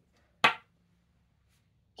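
A single sharp wooden knock about half a second in, a chess piece striking the wooden board.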